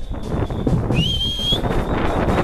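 A short, high whistle, rising slightly in pitch, about a second in, over the low noise of a marching street crowd.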